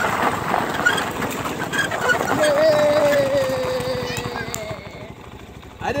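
Off-road go-kart running, with a steady whine that falls slowly in pitch as the kart slows. The noise dies down near the end as it comes to a stop.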